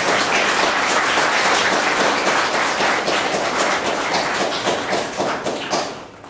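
Audience applauding, many hands clapping at once, dying away just before the end.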